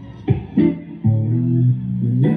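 Electric guitar playing: two quick strums followed by a low chord left to ring.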